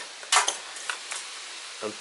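A short scrape and click as a cable connector is pulled off the top of a Toyota 16-valve EFI engine, followed by two lighter clicks.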